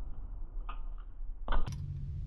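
BMX bike landing on concrete with one sharp thud about three-quarters of the way through, after a couple of light clicks, over a steady low rumble.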